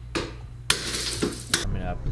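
Window glass being smashed in: a small knock just after the start, then a sharp crash of breaking glass with clinking shards, and another hit about three quarters through.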